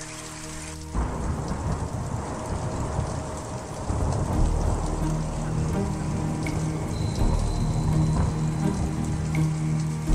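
Recorded rain and thunder effect in a slow-jam mix: a held chord gives way about a second in to a sudden wash of rain, with low rumbling thunder growing from about four seconds and a low held note coming back in under it.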